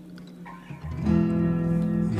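Slowed, reverb-heavy song with no singing: after a quieter lull, a guitar chord comes in just before a second in and rings steadily.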